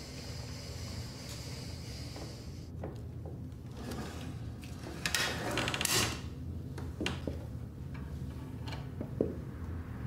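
A door being opened, with a noisy rattle of handle and latch about five seconds in, then a few sharp clicks and knocks over a steady low hum.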